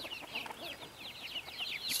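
A flock of chickens peeping and chirping: a quick, busy run of short high calls.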